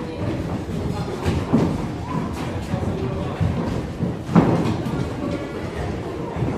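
Footsteps of people running on a wooden floor around chairs, with thuds and knocks, over crowd voices and music. The loudest knock comes about four seconds in.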